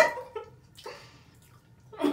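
A person's voice trailing off at the very start, then quiet apart from a couple of faint, short soft noises.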